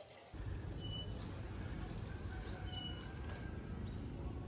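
Outdoor ambience: a steady low rumble with a bird's short, high chirps, heard twice.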